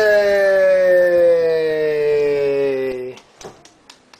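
Human voices holding one long drawn-out vocal note that slides slowly down in pitch, a higher voice and a lower one together. The note stops abruptly about three seconds in, and a few faint clicks follow.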